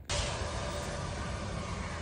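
Steady background noise, an even hiss with a low rumble underneath. It starts abruptly at the beginning and holds at one level throughout.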